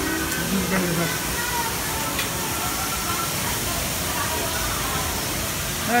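Steady rushing hiss of running water, like a waterfall or tank outflow in an aquarium exhibit, with faint voices behind it.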